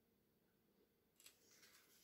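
Near silence: room tone, with a faint tick about a second in and faint handling sounds after it.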